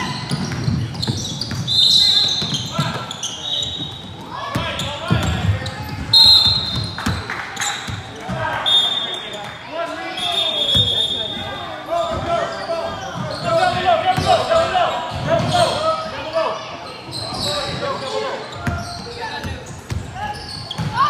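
Youth basketball game in a gym: spectators shouting and talking, a basketball bouncing on the hardwood floor, and all of it echoing in the large hall. Several short, steady high-pitched tones sound during the first half.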